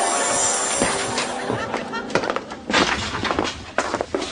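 Sitcom soundtrack: music with held notes for about two seconds, giving way to a run of sharp knocks and thumps in the second half.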